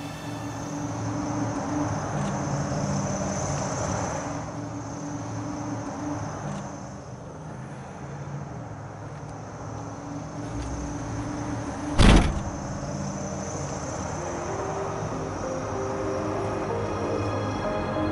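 Synthesizer music score with held, steady notes. About twelve seconds in, a single loud thud: a car's rear hatch slammed shut.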